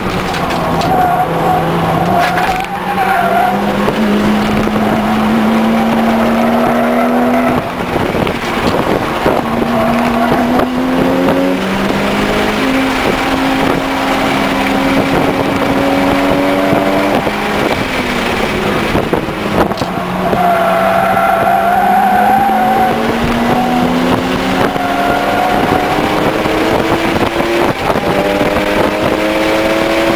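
Mitsubishi Lancer Evolution IX's turbocharged four-cylinder engine heard from inside the cabin at track pace, its pitch climbing and dropping back several times through the gears and corners. The tyres squeal through corners twice, near the start and again about two-thirds of the way in.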